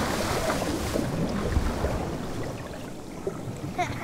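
Scuba divers dropping into the sea from a boat: a splash at the start, then a dense rush of bubbles and churning water that slowly eases.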